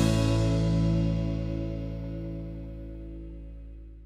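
Closing theme music ending on one long held chord that slowly fades out.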